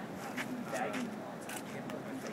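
Indistinct men's voices, with a few light clicks and rattles from a stretcher frame being rolled up to an ambulance loader.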